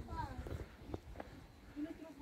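Faint voices of people talking, over a low uneven rumble, with a couple of light clicks about a second in.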